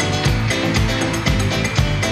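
A live band playing an upbeat, Latin-flavoured dance-pop song without vocals: a steady kick drum about twice a second with hi-hats, bass and keyboards.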